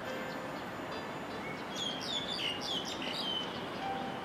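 A bird calling: a quick run of high chirps, each sliding down in pitch, beginning a little under two seconds in and lasting about a second and a half, over steady background noise.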